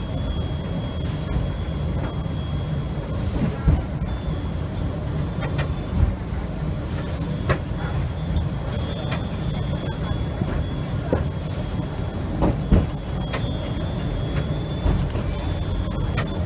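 Low steady rumble of a slow-moving train car running behind the tender of steam locomotive No. 8630, a JNR Class 8620, with sharp clanks and knocks every few seconds.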